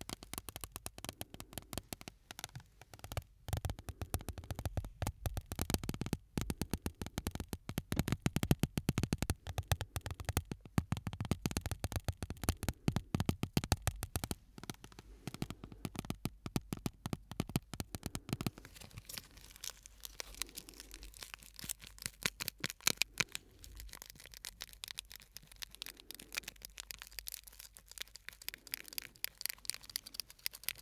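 Shards of broken glass handled close to the microphones: a rapid, dense run of small clicks, taps and scrapes of glass on glass, fuller for about the first eighteen seconds, then lighter and sparser.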